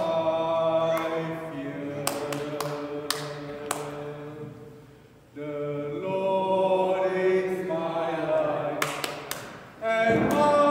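A male cantor singing the responsorial psalm refrain in long held notes. He breaks off for a moment about five seconds in, then starts the next phrase.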